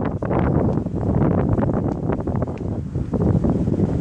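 Wind buffeting the phone's microphone: a loud, uneven low rumble that rises and falls with the gusts.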